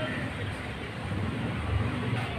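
Steady background noise with a low rumble that swells slightly near the end.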